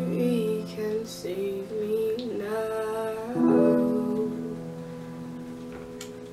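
Soft music: sustained chords under a wavering melody line, fading toward the end.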